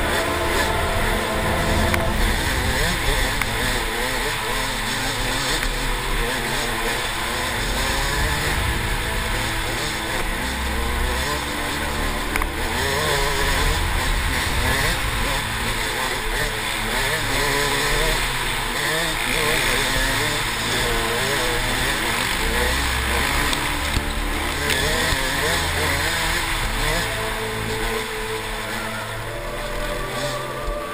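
A KTM 200 XC-W two-stroke dirt bike engine at race pace, its revs rising and falling constantly as the rider works the throttle over rough dirt track.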